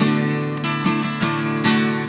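Acoustic guitar strummed, its chords ringing on between strokes.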